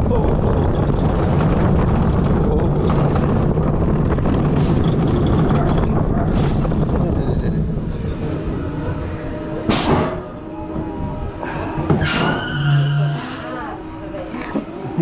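Zierer family roller coaster train running along its steel track, a loud steady rumble that fades as the train slows into the station. Two short, sharp noises follow near the end as the train is brought to a stop.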